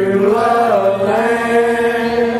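A man singing one long held note of a gospel song through a microphone, the pitch bending slightly about half a second in before it settles.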